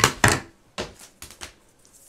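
Paper envelope and card being handled on a cutting mat: a few quick taps and rustles, loudest in the first moment, then a few lighter ones.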